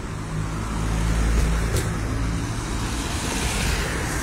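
Street traffic: a car engine running close by, with the hiss of tyres and road noise, swelling about a second in.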